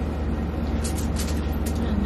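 A steady low hum, with a few faint crisp clicks between about one and two seconds in, from crispy fried frog legs being torn apart and chewed.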